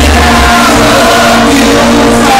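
Live band music from a concert stage in a large hall, recorded loud on a phone's microphone in the audience.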